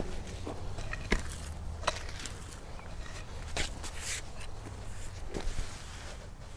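Soil and small stones being pulled back into a hole with a pickaxe and pressed down by hand: scattered scrapes and a handful of short knocks about a second apart.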